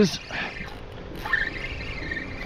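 A spoken word at the very start, then a faint steady whir from a spinning fishing reel while a hooked fish is being fought, growing more constant in the second half.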